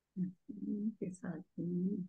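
A woman's voice speaking a few short, indistinct words, heard over a video call.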